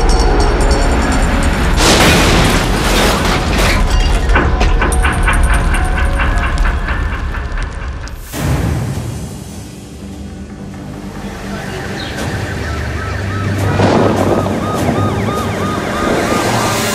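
Tense film score with a sudden heavy boom about eight seconds in: a car exploding. The sound then dies away and the music builds again.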